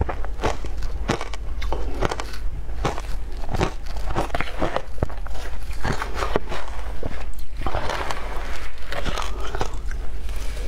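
Close-miked crunching and chewing of mouthfuls of shaved ice, a quick irregular run of sharp crunches, with a metal spoon scraping and digging through the ice in a plastic container.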